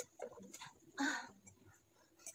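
A woman's breathy "aah" about a second in, a gasp for breath while gulping down water, with a few faint short sounds before it.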